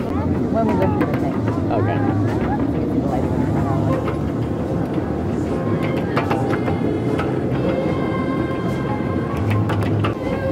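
Train car running along the track with a steady rumble, a few sharp clacks about six seconds in. Passengers' voices and music play over it.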